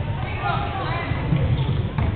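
Indoor basketball game sound: a ball being dribbled and feet running on the hardwood court, with faint players' and spectators' voices echoing in the gym. It sounds dull and muffled.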